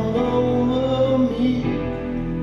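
Live rock band performing in an arena, with a long held sung note over keyboards, bass and drums.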